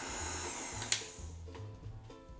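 Tilt-head stand mixer motor running with a steady whirr while mixing cake batter, switched off with a click about a second in. Soft background music follows.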